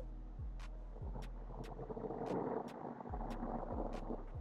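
A deck of playing cards handled and cut on a close-up mat, heard faintly as a few soft clicks over low hiss and a steady hum.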